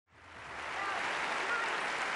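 Audience applauding, fading in over the first half second and then holding steady.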